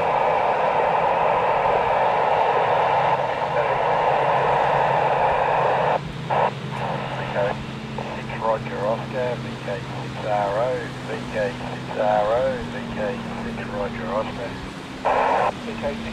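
Amateur satellite FM downlink heard through a Yaesu FT-817 receiver's speaker. There are about six seconds of loud, narrow-band rushing hiss, then the hiss drops away and a distorted voice comes through the noise, with another brief burst of hiss near the end.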